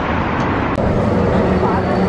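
City street traffic noise, with a city bus driving past and a steady low engine hum in the second half.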